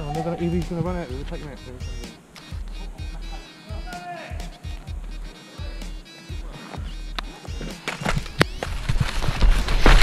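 Airsoft guns firing: scattered sharp shots that build into rapid strings of shots in the last two seconds.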